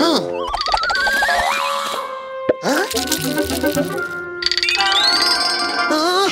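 Cartoon sound effects with sliding pitches over children's background music: a wobbling rising glide in the first two seconds, a quick fall and rise about halfway through, and another rising glide near the end.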